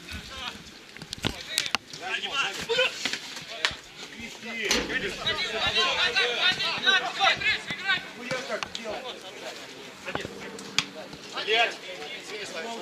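Several men's voices calling and shouting across a football pitch during play, overlapping, busiest in the middle. A few sharp thuds of the football being kicked come through, one about five seconds in.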